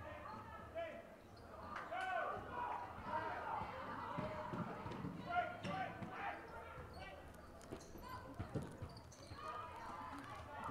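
A basketball bouncing on a gym floor in a run of dribbles, over a background of voices in a large hall.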